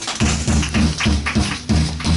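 Upright double bass plucked in a run of low notes, about four a second, with strokes and cymbal hits on a drum kit, in free jazz improvisation.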